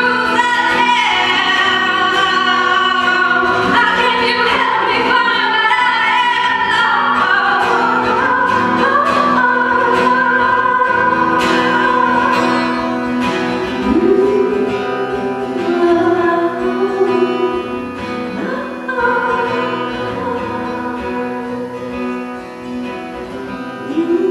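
A woman singing live with a strummed acoustic guitar accompanying her; the strumming is clearest in the first half.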